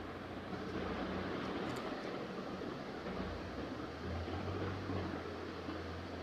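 Steady background room noise: an even hiss with a low hum underneath.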